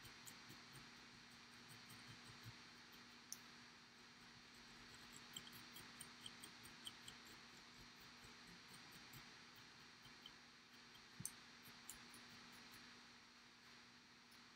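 Near silence with faint, scattered ticks and scratches: a dubbing pick teasing out the shaggy dubbing fibers on a fly's body, with a couple of slightly louder clicks.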